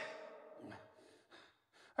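A man's faint breaths and gasps, after the tail of a spoken line fades away in the first half second.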